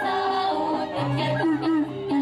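Balinese dance-drama vocal: a performer's stylized sung voice, held wavering notes giving way to short stepping notes, with a low steady tone coming in about a second in.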